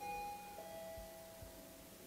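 Elevator arrival chime: a two-note electronic ding-dong, a higher note and then a lower one about half a second later, both ringing on and fading slowly.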